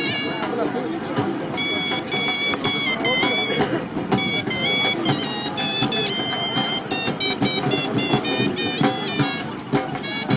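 Traditional music from a high, shrill reed pipe playing a melody in held notes that step up and down, over the steady hubbub of a crowd talking.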